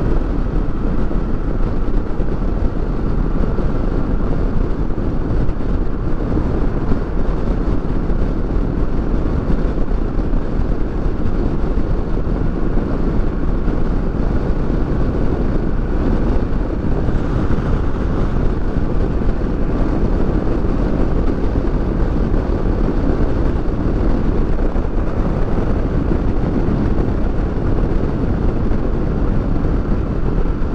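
Kawasaki Versys 650 motorcycle cruising steadily at road speed: its parallel-twin engine running under a constant rush of wind and road noise, with no gear changes or revving.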